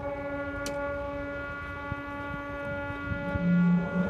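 Marching band holding a soft, sustained chord. Near the end a loud low note comes in beneath it.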